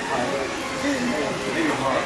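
Indistinct voices talking over the steady background hubbub of a large store.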